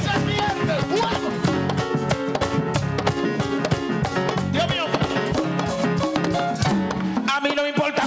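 Live band playing fast Latin-rhythm worship music with dense hand-drum and percussion strokes. A voice calls out briefly over the music about halfway through and again near the end.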